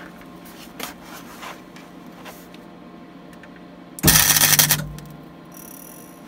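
Gasless (flux-core) MIG welder striking a single tack weld on a steel floor patch: a crackling arc burst just under a second long, about four seconds in. A few faint clicks come before it.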